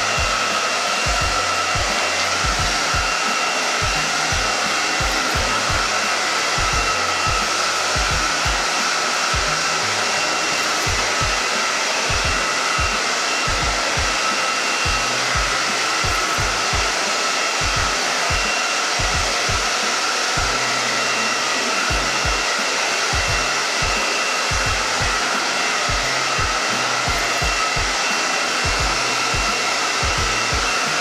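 Handheld hair dryer blowing continuously at an even level, its motor giving a steady whine over the rush of air.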